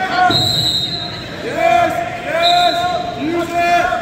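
Coaches and teammates shouting short, repeated calls during a high school wrestling bout, with a thud on the mat about a third of a second in and two brief high squeaks.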